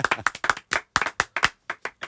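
A few people clapping their hands in sparse, uneven claps that thin out with widening gaps toward the end.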